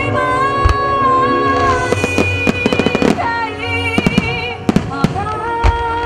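Aerial fireworks shells bursting and crackling over music from a pyromusical show. A quick run of crackling reports comes about two to three seconds in, with more bangs around four to five seconds and one near the end, while a held, sustained melody carries on underneath.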